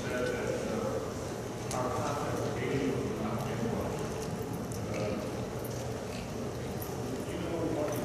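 Faint, distant speech from a voice away from the microphone, heard in a large hall with its echo and room noise.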